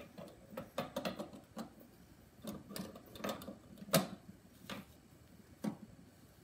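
Irregular light clicks and knocks of the portafilter and metal fittings of a De'Longhi espresso machine being handled and fitted into the group head, the sharpest knock about four seconds in and another just before the end.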